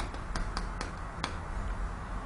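Chalk writing on a chalkboard: about half a dozen sharp clicks and taps as the chalk strikes the board while a short word is written.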